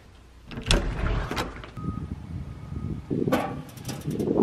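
A black metal curbside mailbox being opened, with a few knocks and clicks of its metal door over a low outdoor rumble.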